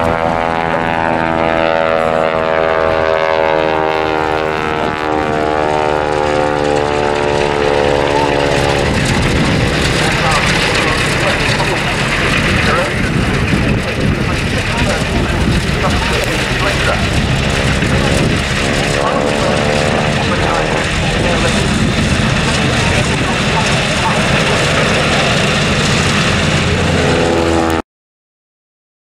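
Travel Air Type R Mystery Ship's propeller engine droning loudly through a low display pass overhead, its pitch sliding as the aircraft comes and goes. The sound cuts off suddenly just before the end.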